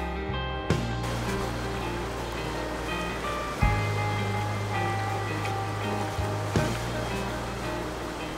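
Background music over the steady rush of a fast-flowing mountain creek, the water coming in about a second in.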